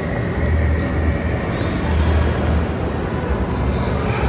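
Background music with a heavy bass over the steady din of a busy indoor amusement park and arcade.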